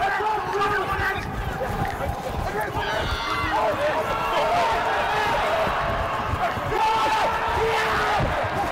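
Indistinct shouting from players and spectators around a rugby pitch during a break in open play, over a low rumble.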